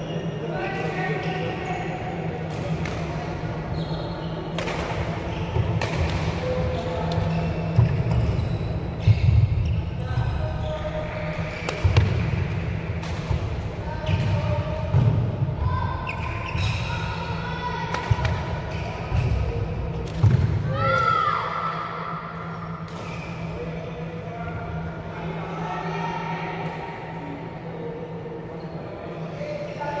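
Badminton rally: irregular sharp racket-on-shuttlecock strikes and players' feet thudding on a wooden court floor, echoing in a large sports hall, with voices talking throughout.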